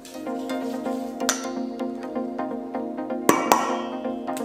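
Background music with steady sustained tones, over which wooden chopsticks clink a few times against a stainless steel mixing bowl, two sharp clinks close together near the end.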